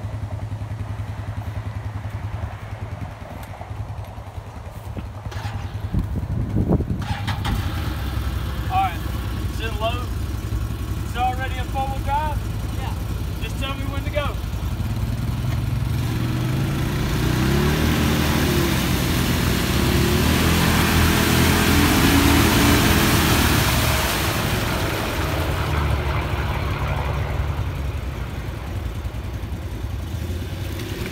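Engines of a mud-stuck Can-Am Defender side-by-side and a four-wheeler pulling it on a tow strap, idling at first. From about 16 s they rev hard under load for several seconds over a loud rush of wheels churning in mud, then settle back.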